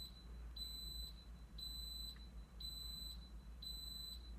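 Instant Pot electric pressure cooker beeping: a high-pitched single-tone beep repeating about once a second, four times.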